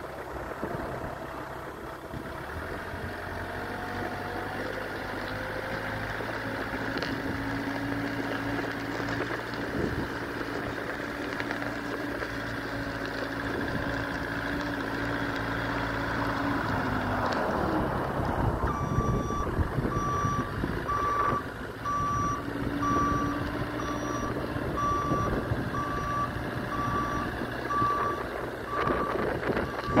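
A Moffett truck-mounted forklift's engine runs steadily as it drives. A little past halfway the engine note changes, and its backup alarm starts beeping evenly, about once a second.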